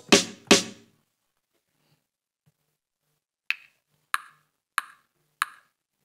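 A drum-machine beat in Serato Studio stops, leaving two decaying drum hits; after a pause, a short, sharp one-shot percussion sample is triggered four times, evenly spaced about two-thirds of a second apart.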